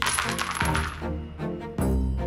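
A handful of metal coins thrown against a robe, clinking and clattering in a quick scatter over about the first second, with a few more clinks near the end. Background music plays under it.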